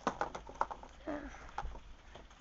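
Cardboard-and-plastic toy packaging being handled: a quick run of clicks and taps in the first second, then a few more scattered ones.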